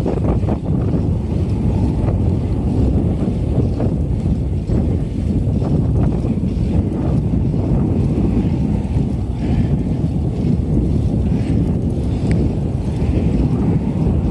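Wind buffeting the microphone of a camera carried on a moving bicycle: a steady, loud low rumble with no let-up.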